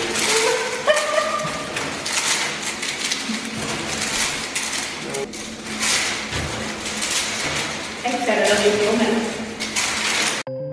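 Women's voices and laughter over a dense rustle and patter of fake gold coins being tossed by the handful and falling back into a bathtub.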